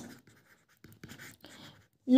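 Faint scratching of a stylus writing on a tablet screen, a few short strokes about a second in.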